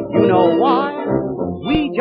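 A male vocalist sings the refrain of a 1930 dance-band song with a wide vibrato, over a dance band, on an early gramophone record whose sound is cut off at the top.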